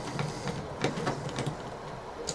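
Small 2.0 mm hex screwdriver backing screws out of a plastic hub on a 3D printer's back panel: faint light clicks and scraping of the bit in the screw heads, a few times over the two seconds.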